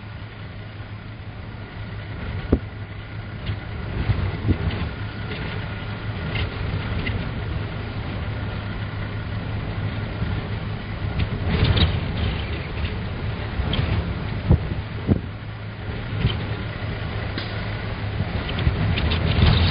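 Vehicle engine idling with a steady low hum under gusting wind, with occasional sharp knocks.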